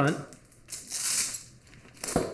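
Nylon webbing strap of a dog harness sliding through the slits of its Velcro cape, a short hissing rustle about a second in.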